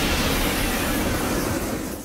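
Steady, loud rushing noise from an anime sound effect, with no clear pitch, fading out near the end.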